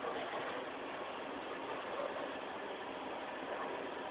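Steady background din of a bowling alley, an even hum and murmur with no distinct pin strikes.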